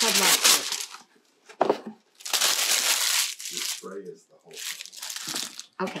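A sheet of wax paper being handled and crinkled: several bursts of crackly rustling.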